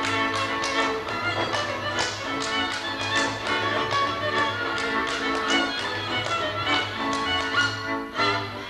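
Hungarian folk string band, several violins over a double bass, playing a lively dance tune, with sharp irregular slaps cutting through several times a second from a male dancer slapping his legs and boots.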